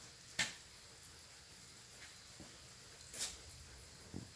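Quiet room tone with a faint steady hiss, broken by two brief soft noises, one about half a second in and another a little after three seconds.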